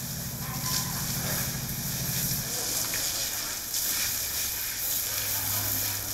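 Water spraying from a garden hose onto an elephant's wet hide during its wash: a steady hiss of running water, with a low hum underneath.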